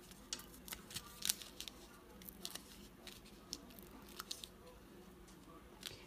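Faint, scattered small clicks and crinkles of paper backing being peeled off foam adhesive squares and of a cellophane-covered card piece being handled.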